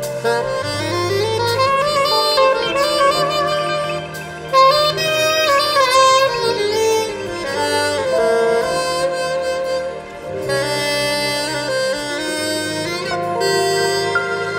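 Soprano saxophone playing a melodic lead with sliding, bending notes over a live band, with held bass notes underneath that change in steps. The line pauses briefly twice, between phrases.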